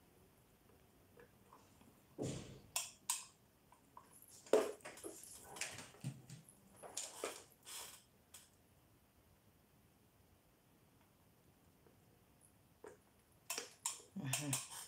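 Faint handling noise: short rustles and clicks as the nail machine's power cord and plastic packaging are unwrapped, then a few quiet seconds, then a couple more clicks near the end.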